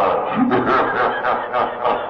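A person laughing, a long voiced chuckle whose pitch wavers up and down.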